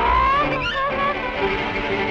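Early-1930s cartoon soundtrack: orchestral music with a sliding, rising tone over the first half-second, followed by shorter wavering slides.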